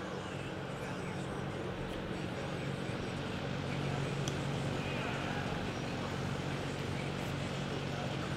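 Steady low hum of an indoor arena with faint voices in the background, and a single sharp click about four seconds in.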